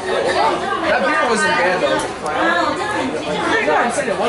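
People talking and chattering, overlapping voices with no clear words, in a busy indoor room.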